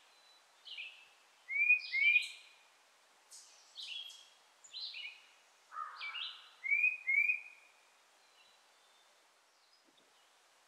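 A songbird singing a run of short, separate phrases, the loudest being pairs of rising notes about two seconds in and about seven seconds in; the song stops about eight seconds in. A faint steady hiss lies underneath.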